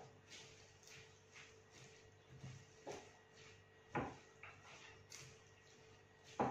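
Faint, irregular scrapes and knocks of a spatula stirring rice salad in a glass dish, about eight strokes, the strongest about four seconds in.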